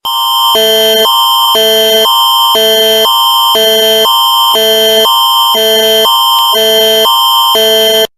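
Canadian Alert Ready emergency attention signal: a loud electronic alert tone that switches back and forth between two chords of pitches about twice a second for about eight seconds, then cuts off suddenly.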